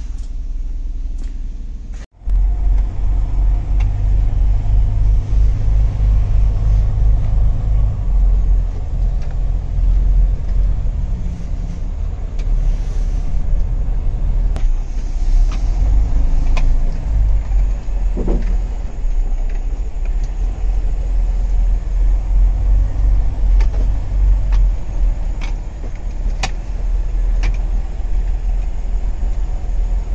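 Volvo D13 truck diesel running with a steady low rumble, heard from inside the cab, with a few sharp ticks over it. The sound drops out briefly about two seconds in, then the rumble comes back louder.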